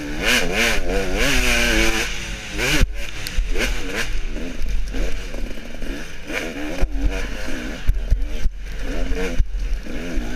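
Two-stroke dirt bike engine revving hard, its pitch rising and falling quickly with the throttle, with sharp knocks and clatter from the bike over rough ground.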